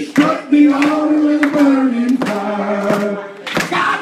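Gospel singing: a man's voice through a microphone holding long, drawn-out notes, with other voices joining and a few sharp claps.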